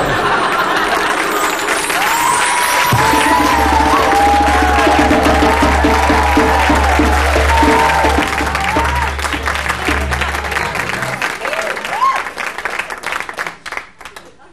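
Audience applauding while a live band plays a short interlude. Bass and hand percussion come in about three seconds in, with gliding guitar lines over them, and everything fades out shortly before the end.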